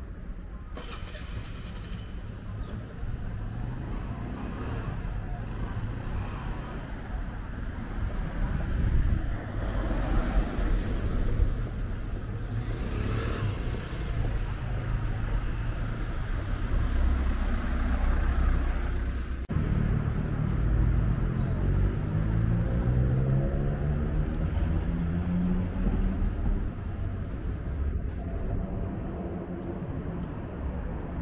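City street traffic: motor vehicles passing with engine and tyre noise, with a louder pass in the middle. In the second half, a vehicle's engine note climbs steadily in pitch as it accelerates.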